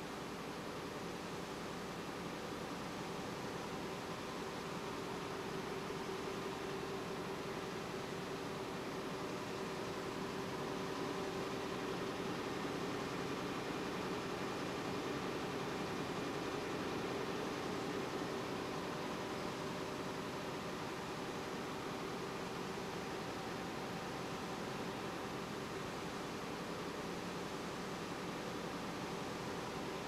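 Steady running noise of a high-speed web offset press: an even mechanical rush with a faint steady hum that swells a little midway.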